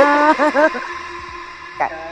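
Women laughing, with a music bed behind them; the laughter dies away after the first second.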